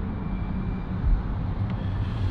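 Steady low engine hum heard inside a car's cabin.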